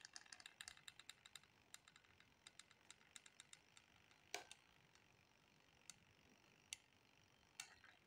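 Faint, irregular clicking from a hot glue gun's trigger and glue-stick feed as it is squeezed to push out glue: a quick run of clicks for the first few seconds, then a few scattered ones.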